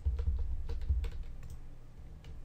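Irregular clicking from a computer mouse and keyboard as logos are selected and nudged in place, about half a dozen clicks over two seconds, over a low rumble.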